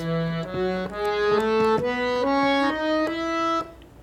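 Harmonium playing the E major scale one note at a time, eight steady reed notes stepping upward about twice a second and stopping shortly before the end.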